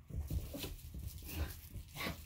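Small dog playing tug with a plush toy on carpet: scuffling, light thumps and brief dog noises.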